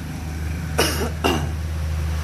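A man coughing twice, about half a second apart, near the middle, over a steady low hum.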